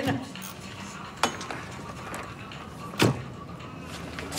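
Two sharp knocks, nearly two seconds apart, over a low steady hum.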